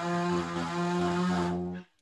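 Small petrol engine of a garden power tool, such as a leaf blower, running at steady high speed: one droning tone with an airy hiss, cutting off suddenly near the end.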